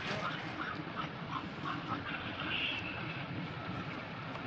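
A series of short, high squeaky animal calls, with a longer, higher call about two and a half seconds in.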